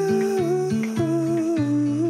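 Background pop song: a voice holding two long, wavering sung notes over plucked acoustic guitar.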